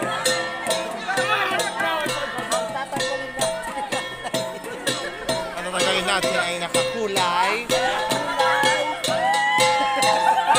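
Igorot gongs and a drum played live in a fast, steady beat, two gong pitches alternating, with people calling out and laughing over the music.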